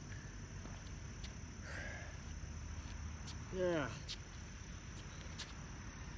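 Crickets chirring steadily in a high, even drone, with a man's short groaning exhale that falls in pitch about three and a half seconds in, from the strain of a set of pushups.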